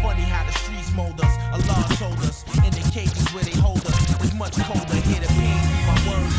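Hip hop track playing: rapping over a drum beat and bass line.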